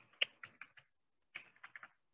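Keys being tapped on a computer keyboard: two short bursts of quick keystrokes, about a second and a half apart.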